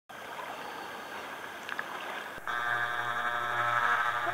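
Lake water lapping and sloshing close to a camera held at the surface. About two and a half seconds in, a steady hum with several pitches comes in suddenly and runs on under the water sound.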